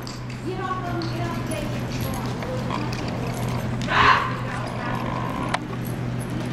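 Indistinct voices with one loud call about four seconds in, over a steady low hum.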